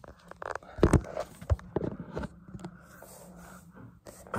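Handling noise from a phone camera being moved and set down on the floor: a cluster of knocks and scrapes, loudest about a second in, over the first couple of seconds.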